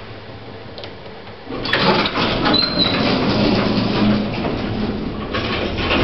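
Sliding car doors of a vintage 1960s lift closing: a click about a second and a half in, then several seconds of steady door-running noise until the doors are shut.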